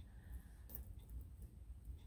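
Near quiet with a low hum and a few faint clicks from the metal coin charms of a gold-tone chain necklace being handled.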